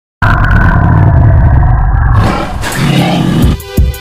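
Recorded dinosaur roar, a deep, loud rumbling growl lasting about two seconds. Music with a beat comes in near the end.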